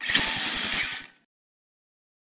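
Sound effect for the animated HOBBYWING logo: a loud buzzing rush with a rapid low pulse, lasting just over a second before it cuts off.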